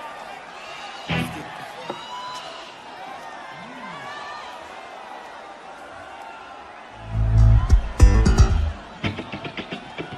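Live-show stage noise between songs over a steady crowd murmur. About seven seconds in, a few loud, low bass notes sound through the PA for under two seconds, followed by scattered clicks and knocks.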